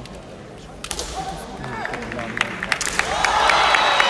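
Kendo bout: sharp cracks of bamboo shinai and kiai shouts from the fighters, echoing in a large hall, growing louder over the last second.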